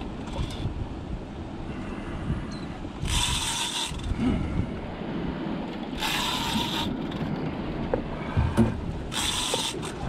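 Large conventional fishing reel cranked in short bursts, each under a second and about three seconds apart, as line is gained on a big fish between pumps of the rod. Steady wind and water noise runs underneath.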